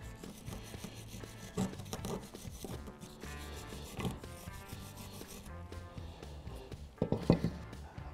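Wire brush scrubbing rust and corrosion out of a brake caliper bracket's slide channels: uneven scratchy strokes, with a few sharper ones near the end, under faint background music.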